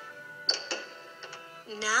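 Background score music with held notes, a sharp bright accent about half a second in and a few light ticks after it; a voice says "Now" near the end.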